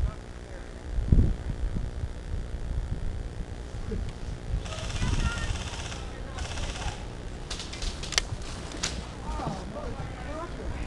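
Airsoft gun fire: a rattling full-auto burst about five seconds in lasting over a second, a shorter burst after it, then a few sharp single shots. A heavy thump on the microphone about a second in is the loudest moment.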